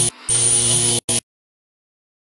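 Loud electric buzz with harsh static hiss that stutters on and off, ending in a short burst and cutting off suddenly about a second in, followed by silence.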